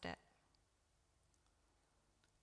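Near silence: room tone after a woman's spoken word ends at the start.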